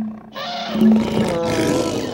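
A wild animal's call played as a sound effect, starting about a third of a second in and continuing with a noisy, wavering pitch.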